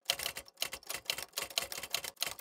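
A rapid, irregular clatter of sharp mechanical clicks, about six a second, starting suddenly out of dead silence.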